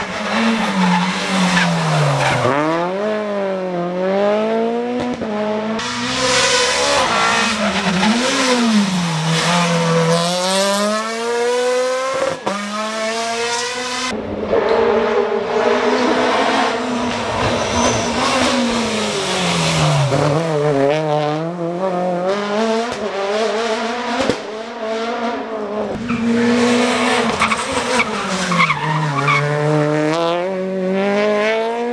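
Several Peugeot rally cars, one after another, at full racing speed through bends: their four-cylinder engines rev high, with the pitch climbing and dropping again and again through gear changes and lifts for corners. There is some tyre squeal.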